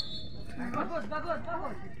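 Spectators' voices talking by the pitch, an indistinct conversation fainter than the speech just before and after.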